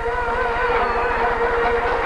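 Peking opera music in slow manban tempo: a long held melodic line with wide vibrato, with a low electrical hum running steadily underneath.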